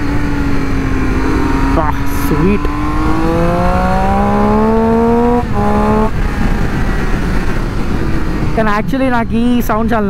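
Triumph Street Triple's three-cylinder engine on its stock exhaust, heard from the rider's seat while riding. It runs steadily, then the revs climb smoothly for a couple of seconds before breaking off about five and a half seconds in and settling again.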